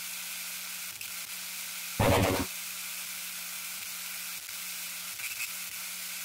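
Steady electronic hiss with a faint low hum underneath, broken about two seconds in by one short, loud burst of noise lasting about half a second.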